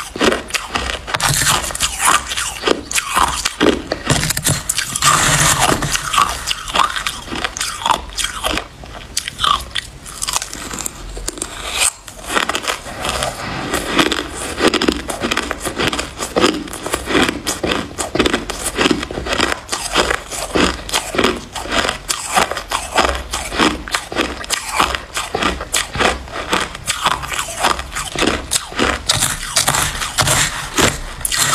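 Close-miked crunching and chewing of mouthfuls of white shaved ice, with many crisp crunches a second and no break.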